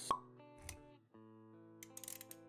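Sound effects of an animated intro over background music: a sharp pop just after the start, a soft low thud a little over half a second in, then held music notes with a few light clicks near the end.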